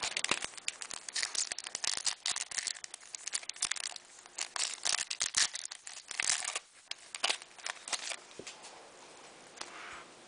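A foil trading card pack wrapper being crinkled and torn open by hand: a dense run of crackles for about seven seconds, then only a few light rustles.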